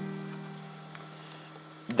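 Capoed acoustic guitar with a strummed C chord left ringing, its notes slowly dying away. There is a faint click about a second in.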